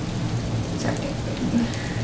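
Steady rain falling, a continuous even hiss with a low rumble beneath it.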